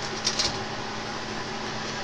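CB radio receiver hiss through the speaker with the squelch open, steady band noise with a faint hum and a brief crackle about a third of a second in. It is the heavy band noise that the operators put down to solar activity.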